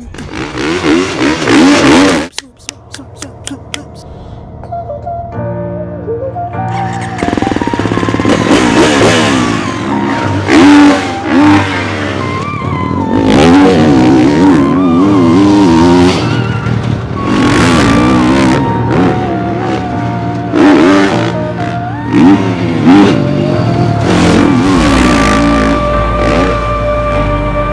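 GasGas motocross bike engine revving hard, its pitch rising and falling again and again as it is ridden around a dirt track, with music playing underneath. There is a short quieter lull after the first couple of seconds.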